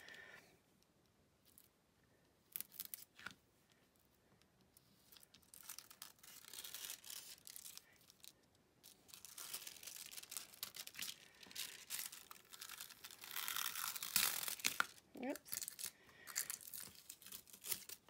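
Thin heat-transfer foil crinkling and rustling as it is peeled off freshly foiled cardstock, with tape pulled up from the cutting mat. A few faint clicks come first; the rustling starts about six seconds in, comes and goes, and is loudest a little before the end.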